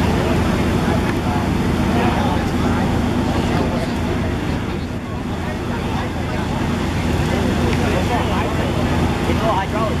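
A fire engine's motor and pump running steadily under load as it supplies a deck-gun stream, a continuous low hum, with people talking in the background.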